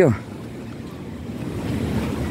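Wind blowing across the microphone: a low rushing noise without any tone in it, growing louder during the second half.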